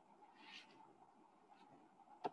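Near silence: faint room tone from the recording, with a weak steady hum.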